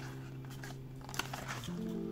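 Soft background music with long held chords, the chord changing near the end, over faint rustles and ticks of a cardboard box being handled.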